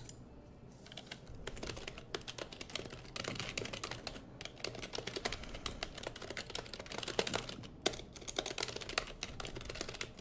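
Typing on a computer keyboard: a quick, uneven run of key clicks that starts about a second in and goes on with short pauses.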